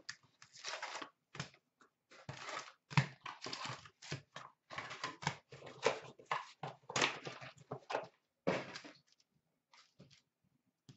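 Foil trading-card packs being handled and laid out on a glass counter: irregular bursts of crinkling and rustling with short pauses between them, stopping about nine seconds in.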